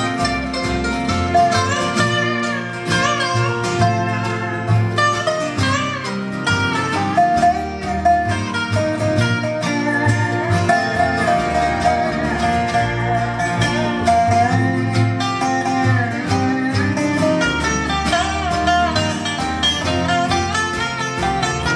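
Bluegrass band playing an instrumental break: a resonator guitar (dobro) played with a steel bar, its notes sliding in pitch, over acoustic guitar, mandolin and upright bass.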